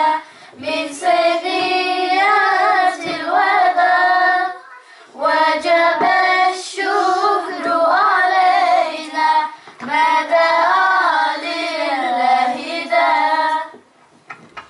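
A group of girls singing together unaccompanied into microphones, in three phrases of about four to five seconds with short breaks between them; the singing stops just before the end.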